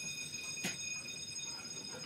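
A sheet of paper being slid and handled on a desk, under a steady high-pitched whine, with one sharp click about two-thirds of a second in.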